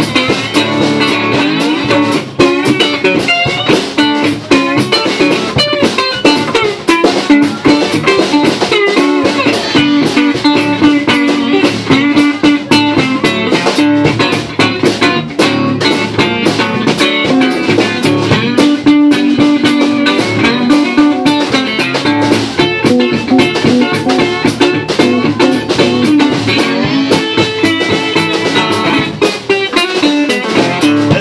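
Live blues band playing an instrumental passage: acoustic guitar leading over upright bass, with a steady beat.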